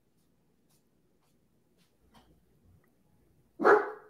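A dog barks once, loudly, near the end, after a stretch of near silence.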